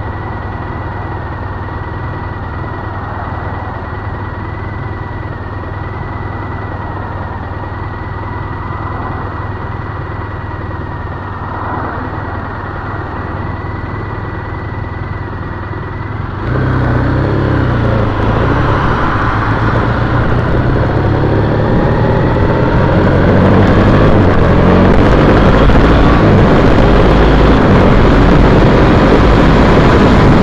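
2010 Triumph Bonneville T100's 865 cc parallel-twin engine idling steadily at a standstill, then, a little past halfway, revving up as the bike pulls away and accelerates, its pitch rising and the sound getting louder, with wind noise on the microphone growing as speed builds.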